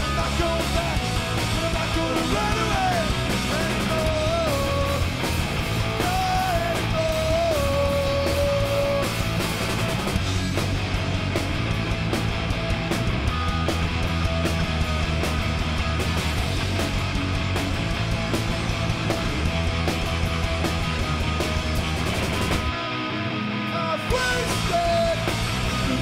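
Live punk rock band playing: distorted electric guitars, bass and drums. A melody line bends in pitch over the first several seconds. About 23 seconds in, the bass and drums drop out for a moment, then the full band crashes back in.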